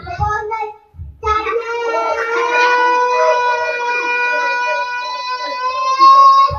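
A child's voice holding one long sung note for about five seconds, starting about a second in, with a slight rise in pitch near the end.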